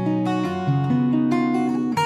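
Acoustic guitar in open D tuning, fingerpicked: a short melodic phrase of single plucked notes over ringing bass notes, with a new note coming in every quarter to half second and each left to sustain.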